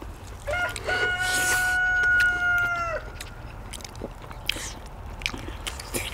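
A rooster crowing once: one long call that starts about half a second in, holds a steady pitch for about two seconds and drops at its end. Short clicking and chewing sounds of people eating run under and after it.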